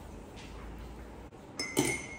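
A metal spoon clinks against a wire-mesh strainer held over a glass: a couple of quick clinks near the end, with a brief ring.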